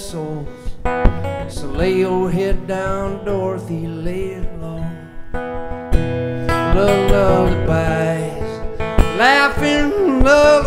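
Acoustic guitar playing a slow lullaby, with a man singing over it at times.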